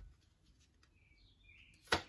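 Oracle cards being handled by hand: a near-quiet stretch, then one sharp tap of a card near the end. A faint short chirp sounds about a second in.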